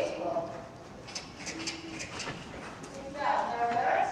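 A horse's hoofbeats, a quick run of them in the middle, with a person's voice at the start and again near the end.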